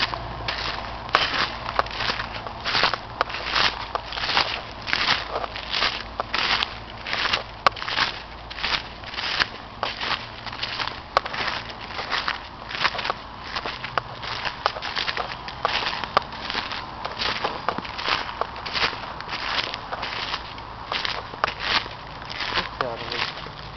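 Footsteps crunching through dry leaf litter at a steady walking pace, about two steps a second.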